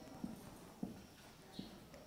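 Marker pen writing on a whiteboard: a few faint taps as the tip touches the board, with a brief squeak about three-quarters of the way through.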